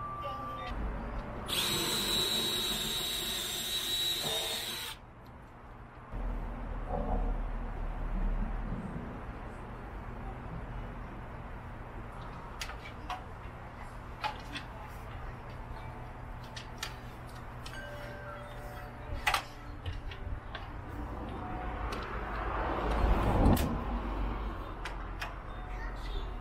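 Scattered metallic clicks and knocks of an aluminium stepladder and folding aluminium lawn chairs being handled. A loud, high whirring noise lasts about three seconds near the start and cuts off abruptly.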